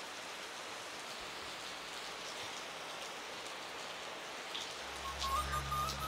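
Steady heavy rain, an even hiss. About five seconds in, low steady musical tones come in under it.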